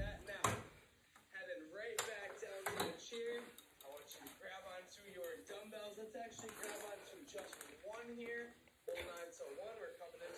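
Indistinct talking that the recogniser caught no words from, with three sharp knocks in the first three seconds.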